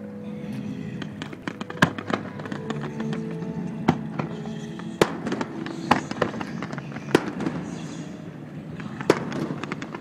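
Aerial fireworks going off, with about six sharp bangs spaced a second or two apart. Music plays steadily underneath.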